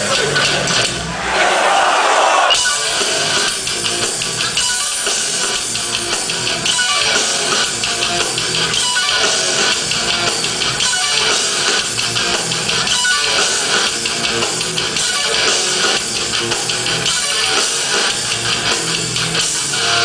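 Hardcore band playing live: electric guitars, bass guitar and drum kit, loud and dense throughout, with a brief louder surge about a second in.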